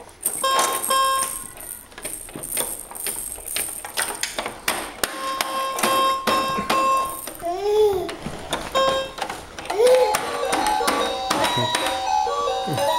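Electronic toy music table sounding short beeping tones and melody snippets as its buttons are pressed, over the clicks and taps of small hands on the plastic buttons. A short tune of stepping notes plays near the end.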